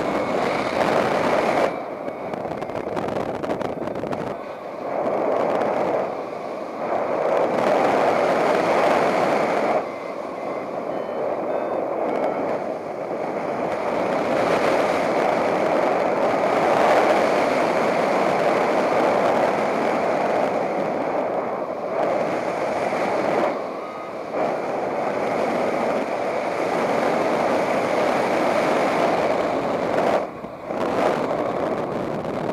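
Wind noise from the airflow of a paraglider in flight, rushing over the pilot's pod harness and the camera microphone. It is steady, swelling and easing with the turns and gusts, with short dips a few seconds apart.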